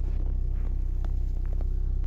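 Steady low rumble of a car engine idling close by, even and unchanging, with a couple of faint clicks.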